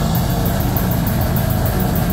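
Deathcore band playing live: downtuned extended-range electric guitars and drums make a loud, dense low rumble under a quick, even cymbal beat.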